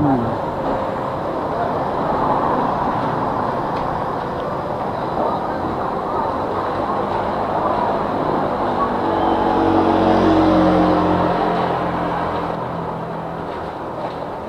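Steady street-traffic noise, with a car's engine coming close and passing, loudest about ten seconds in and fading after.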